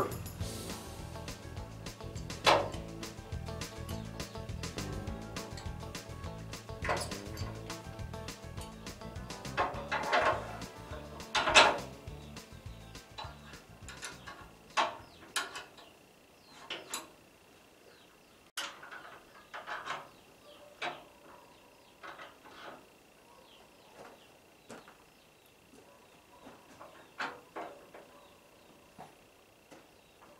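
Irregular metallic clinks and clanks of a steel parking brake cable and its linkage hardware being handled and threaded through a steel truck frame, over background music that ends about halfway through.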